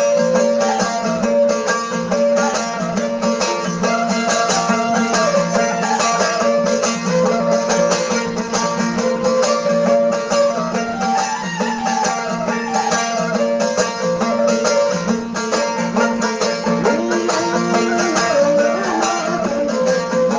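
Balochi folk instrumental music: a suroz, the Baloch bowed fiddle, plays a melody that slides between notes over a steady, plucked string drone and rhythm.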